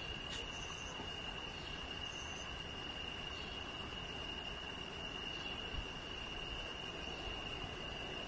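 Crickets trilling steadily in one continuous high-pitched tone over a faint even background hiss.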